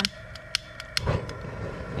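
A few sharp clicks, then about a second in the propane burner lights and settles into the steady rushing sound of its gas jet burning.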